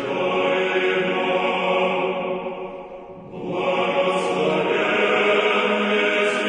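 Choral chant sung in sustained, held chords as closing music; the singing dies away into a short break about three seconds in, then the next phrase begins.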